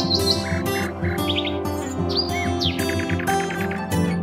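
Background music with birds chirping over it: short chirps and quick trills come again and again.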